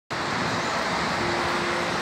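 Steady hum of road traffic from a wide, busy city street.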